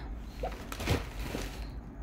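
Soft rustling and handling of a plastic mailing bag, with a few light knocks near the middle.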